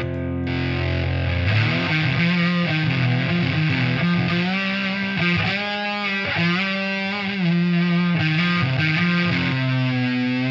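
Heavily distorted electric guitar, a humbucker-equipped single-cut kit guitar tuned down to D standard with heavy 11–52 strings, playing low held notes and riffs. Near the end one note wavers and bends in pitch.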